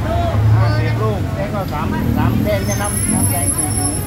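Several people talking in Thai over a steady low rumble of street traffic with an engine running close by.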